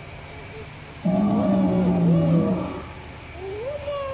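A recorded dinosaur roar played from an animatronic dinosaur display's loudspeaker, starting suddenly about a second in and lasting about a second and a half.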